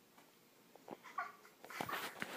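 A brief faint squeak-like vocal sound about a second in, followed near the end by rustling and bumping as the phone is moved against clothing.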